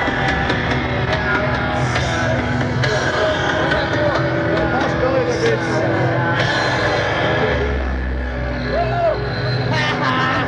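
Loud live rock music from an outdoor festival stage, with people's voices close by.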